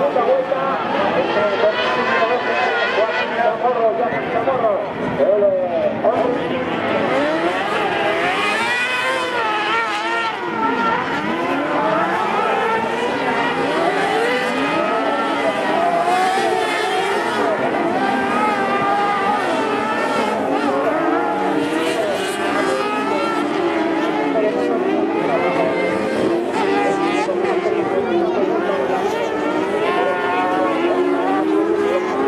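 Several motorcycle-engined carcross buggies racing on a dirt track, their engines revving up and down over one another as they accelerate and lift through the corners.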